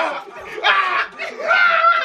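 Young men's excited shouts while dancing: two loud yells, the second drawn out and held high before it drops off.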